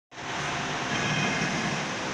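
Steady, even noise of running machinery, unbroken throughout, with a faint hum in it.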